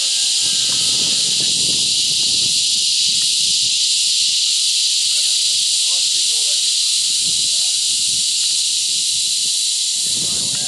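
A steady, loud high hiss, with the T-Rex 600 nitro RC helicopter faintly heard overhead. Its lower engine and rotor sound thins out after the first couple of seconds, and a few faint tones glide up and down later on.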